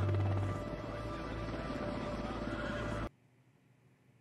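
The episode's soundtrack playing: a steady low drone with held tones under music. It cuts off abruptly about three seconds in.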